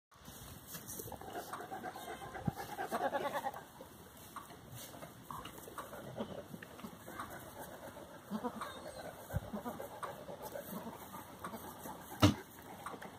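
Kiko goats bleating, the loudest and longest call about two to three seconds in, with shorter calls later.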